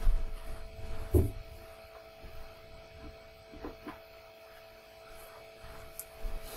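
Steady low electrical hum with faint room noise, a soft thump about a second in and a couple of faint knocks later on.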